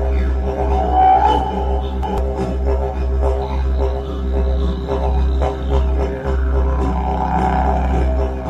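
Didgeridoo music: a steady deep drone with overtones that sweep up and down above it, and short clicks scattered through it.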